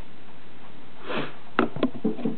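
A person sniffing through the nose about a second in, followed by two short, sharp sniffs or clicks near the end, over a steady hiss.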